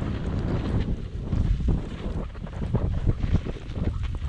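Wind buffeting the microphone of a pole-mounted action camera during a fast descent on snow, an uneven low rumble, mixed with short scraping sounds of sliding over the snow.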